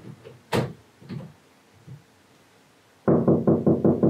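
A sharp click about half a second in, then a quick, even run of about six loud knocks on a door near the end.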